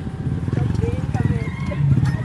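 Small motorcycle engines puttering with a rapid, even beat as two underbone motorcycles ride up and slow to a stop.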